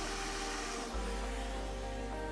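Soft background music with held tones over a steady hiss of air from a hot-air rework station nozzle blowing on the HDMI port as its solder is molten.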